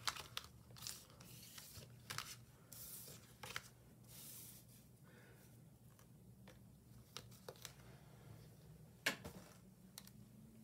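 Tarot cards being gathered up and slid together on a wooden table: soft swishes and light taps in the first few seconds, then quiet with one sharp tap near the end.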